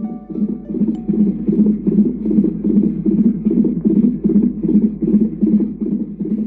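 Unborn baby's heartbeat as picked up by a fetal Doppler ultrasound monitor: a fast, steady pulsing of a few beats a second over a low hum.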